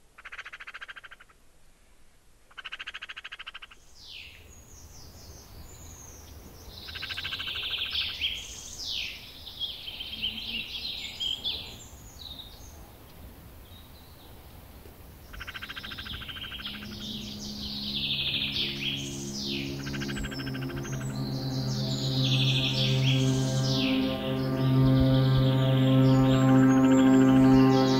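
Two short buzzy frog-like trills near the start, then a busy chorus of quick bird chirps; about halfway through a low sustained ambient music drone fades in and swells, growing louder to the end.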